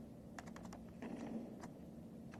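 Faint computer keyboard typing: a quick run of key clicks about half a second in and another click a little later, over quiet room tone.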